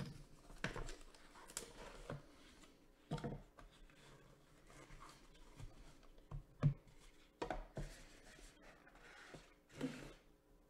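Faint handling sounds as a small cardboard trading-card box is opened and its contents slid out: scattered scrapes and rubs of cardboard, with a few sharp taps, the loudest about two-thirds of the way through, as a clear plastic card case is set down on a mat.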